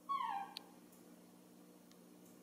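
Baby monkey giving one short cry, about half a second long, that falls in pitch: a hungry cry for milk.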